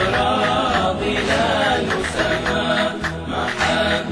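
Arabic Shia devotional nasheed sung by a male voice: a sung line whose pitch wavers and winds through drawn-out melismatic notes.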